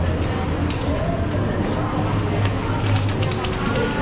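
Indistinct voices of people talking, with no clear words, over a steady low hum.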